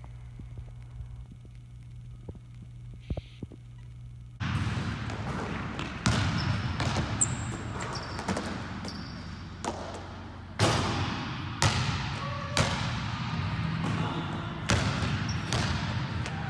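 A basketball bouncing and sneakers working on a hardwood gym floor, echoing through the large hall. After a low steady hum in the first four seconds, sharp impacts come every second or two.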